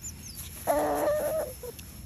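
A single short animal call, a pitched cluck-like sound lasting under a second, heard about two-thirds of a second in.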